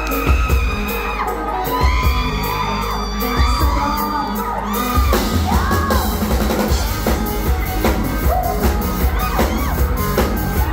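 A live band playing a loud dance song, with drums, electric bass, electric guitar and keyboard, a singer's voice and yells and whoops over the top. The beat's low end changes about halfway through.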